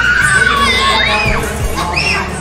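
Several children shouting and squealing at play, high-pitched calls rising and falling over crowd noise.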